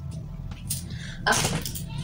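Packaged groceries being handled: a brief rustle-and-knock as a tin is set down among plastic snack packets, over a steady low hum.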